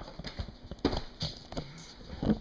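Handling noise as the camera is moved and set up: a handful of light, irregular knocks and taps, about four in two seconds.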